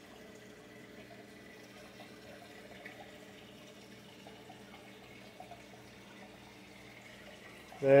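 Faint, steady running and trickling water from a reef aquarium's circulation and filtration, with a low steady hum under it. A man's voice starts right at the end.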